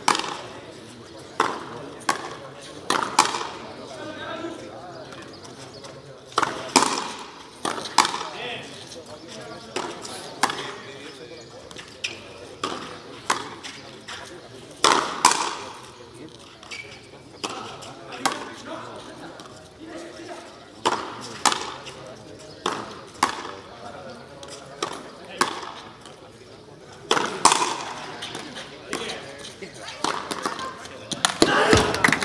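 Frontenis rally: the small rubber ball struck by racquets and smacking against the fronton wall, a string of sharp cracks about every second or so, some ringing briefly off the wall.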